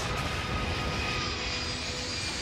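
Steady rushing engine noise of a spacecraft's rocket thrusters firing, as a sound effect, with a few faint high tones held over it.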